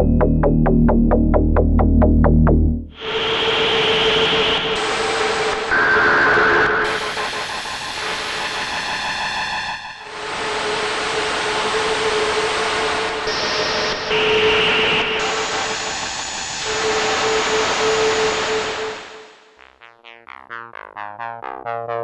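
Sequential Prophet 12 synthesizer playing preset sounds. It opens on a rhythmic sequenced pattern with deep bass. About three seconds in it switches abruptly to a hissing, noisy textured patch over a steady held note, with bright bands of noise shifting across it. Near the end it drops to quieter, sparse plucked notes.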